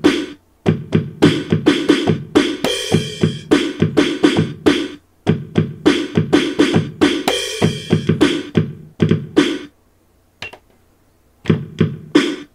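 Electronic drum samples from the Sylvania SP770 boombox's drum pads, played by hand through its own speaker: a fast run of drum hits with two longer crashes. The pads are not pressure-sensitive, so every hit sounds at the same volume. The drumming stops about ten seconds in, and drum sounds start again just before the end.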